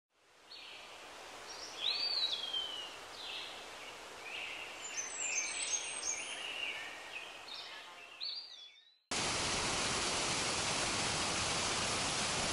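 Birds chirping and calling over a faint outdoor hiss that fades in and out. About nine seconds in it cuts suddenly to the steady, louder rush of a waterfall.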